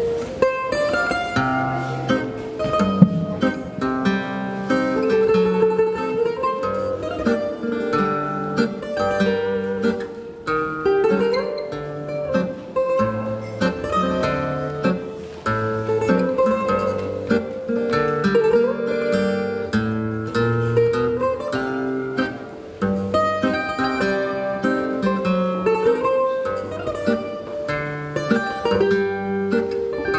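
Guitarra portuguesa and viola de fado playing a fado's instrumental introduction: the Portuguese guitar's bright plucked melody, with a few bent notes, over the viola's chords.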